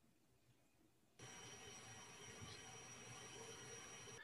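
Near silence: a faint steady hiss with a thin high whine comes in about a second in and holds steady.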